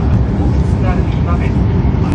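Steady low rumble of a Hokkaido Shinkansen train running, heard inside the passenger cabin, with a faint voice about a second in.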